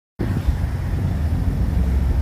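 Steady low rumble of a vehicle engine at idle, with wind on the microphone.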